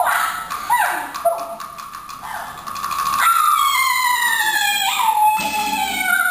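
Teochew opera singing: a high voice in short swooping phrases, then from about three seconds in one long note sliding slowly down, with a few sharp percussion clicks.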